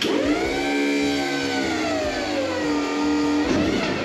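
Forklift working its lift to raise the hoisted engine: a steady mechanical whine that starts suddenly, slowly sinks in pitch, and wavers briefly near the end.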